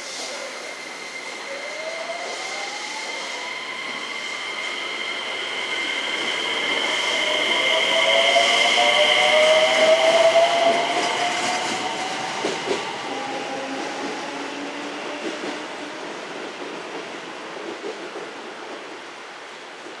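JR West 321-series electric multiple unit pulling away and accelerating. The whine of its inverter-driven traction motors rises in pitch in several glides. It grows loudest as the cars pass about ten seconds in, then fades as the train draws away, with a few clicks from the wheels on the rails.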